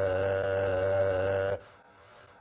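A man's voice holding one drawn-out vowel at a steady pitch, a hesitating, stretched-out syllable mid-sentence. It cuts off about a second and a half in.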